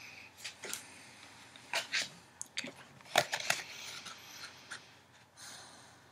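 Tarot cards being handled and picked up off a cloth-covered table: a scatter of light, sharp card clicks and paper rustles, fading out near the end.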